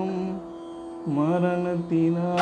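A solo voice singing a slow Tamil devotional song in long held notes. A held note ends shortly in; after a brief pause a new phrase begins about a second in, dipping in pitch and then settling on a sustained note.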